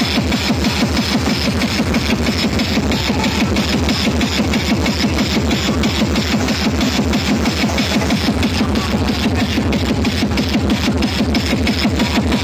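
Loud dance music with a fast, steady beat and heavy bass, played through large DJ sound-system speaker stacks.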